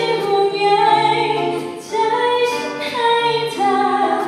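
Women's voices singing a Thai pop ballad together in held, sustained notes over a strummed acoustic guitar.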